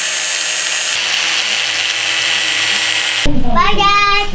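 Electric angle grinder running with its disc cutting into a panel: a steady, loud, high-pitched grinding hiss. It cuts off abruptly about three seconds in.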